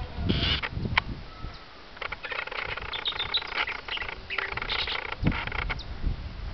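Brown-backed mockingbird (Mimus dorsalis) singing: a short burst of song just after the start, then from about two seconds in a long run of rapid, varied notes. A couple of low thumps come near the start and near the end.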